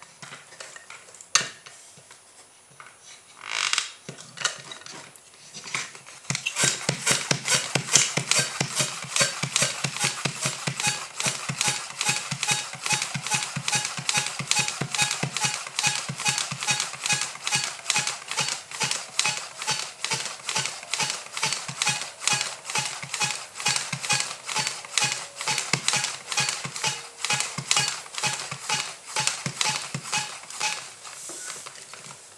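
Hand air pump worked in fast, even strokes, each with a rush of air, pumping up the pressure bottle of a toy air-engine car. A few clicks and a short rustle come first; the steady pumping starts about six seconds in.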